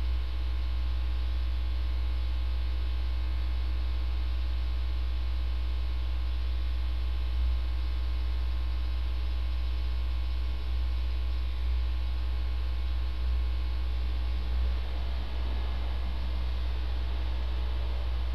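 Steady electrical mains hum with a ladder of overtones, over a constant hiss.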